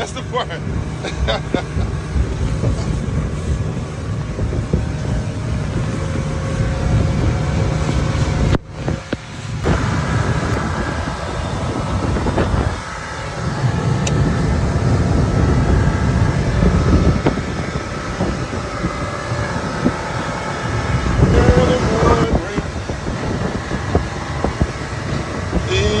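Yamaha 200 outboard motor running as the boat travels at speed, with wind blowing across the microphone. The sound drops out briefly about nine seconds in.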